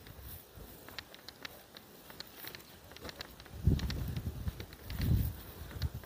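Quiet outdoor footsteps, heard as faint scattered clicks and rustles of someone walking. Two brief low rumbles of wind buffet the microphone a little past halfway.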